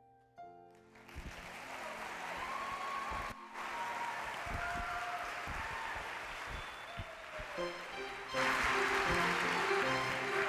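Theatre audience applauding steadily. About eight seconds in, the music for the next number starts up loudly over the tail of the applause.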